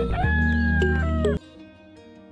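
A loud call with a wavering, gliding pitch over a steady low hum and regular ticks cuts off suddenly about a second and a half in. It gives way to soft plucked guitar music.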